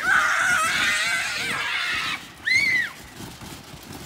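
Children screaming in play: one long high-pitched scream of about two seconds, then a short shriek about half a second later.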